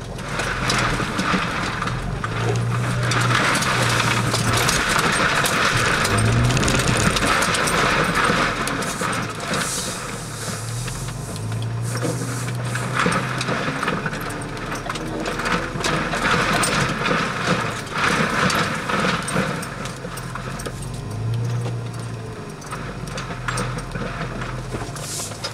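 Toyota FJ Cruiser's V6 engine running at low trail speed, heard from inside the cabin. A low drone comes and goes over a steady haze of tyre and cabin noise.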